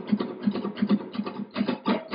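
Flamenco guitar rasgueo: fast, even strums across the nylon strings, about six strokes a second. It is the three-stroke pattern of thumb up, ring finger down, index down, played over and over.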